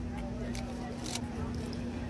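Faint background voices over a steady low hum, with two short clicks about half a second and a second in.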